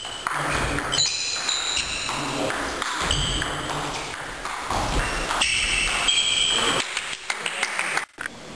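Table tennis rally: the celluloid ball clicking off the bats and the table in quick exchanges, with high squeaks of shoes on the hall floor twice as the players move.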